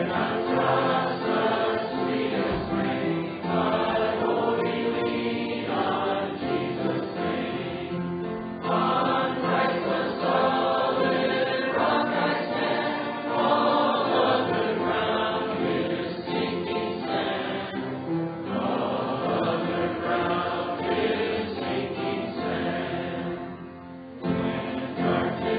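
A small congregation singing a hymn together, line by line, with short breaks between lines about every ten seconds.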